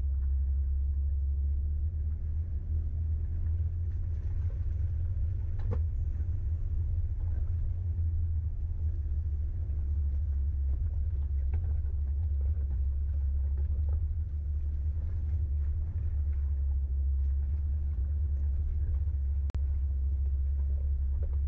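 Steady low rumble of an off-road vehicle crawling up a rough, rocky mountain track, with a few faint knocks through it. A brief click and dropout comes near the end.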